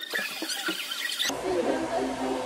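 Short high-pitched squeals and shrieks of laughter from young women. About a second in, they cut off abruptly and a hair dryer runs steadily, with faint talk underneath.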